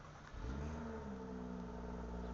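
An engine starts running about half a second in. It settles from a slight drop in pitch into a steady low hum.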